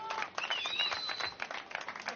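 Small audience clapping, with a few high cheering shouts.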